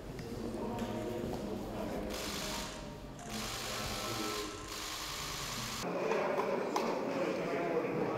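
Indistinct voices with music in the background.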